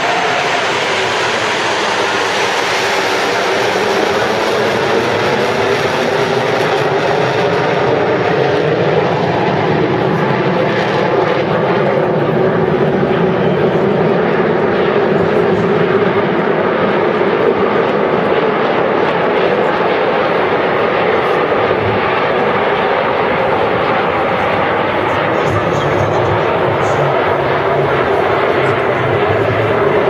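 Turbojet engines of a formation of Aermacchi MB-339 jets flying past, a loud, steady, continuous rush of jet noise with a faint pitch that slowly glides.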